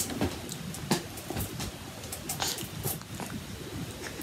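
Quiet handling sounds: soft rustles and a few small scattered clicks as dropped scrambled egg is picked off a fabric blanket by hand and eaten.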